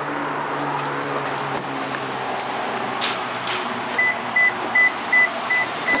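A vehicle engine running with a steady low hum. In the last two seconds, a rapid run of short, high, even beeps, about two and a half a second, like a vehicle's warning chime.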